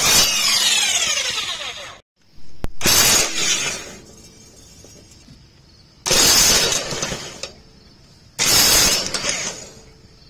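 Cordless drill with a socket turning a riding mower's blade bolt, in four bursts of about a second and a half each with short pauses between them. The socket and bolt rattle against the steel mower deck.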